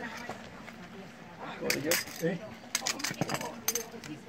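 A few sharp clicks and clacks: lead dive weights and the metal buckle of a nylon weight belt knocking on a concrete floor as the belt is laid down among the weights.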